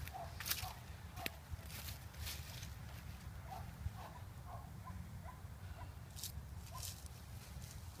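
Footsteps through dry grass, a few scattered crunching steps over a low steady rumble.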